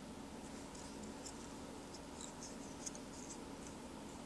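Faint, scattered scratchy ticks of fingertips and tying thread working India hen feather fibres onto a nymph fly held in a vise, over a steady low hum.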